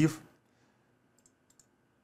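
A few faint computer mouse clicks, two or three close together about a second and a half in, against near silence.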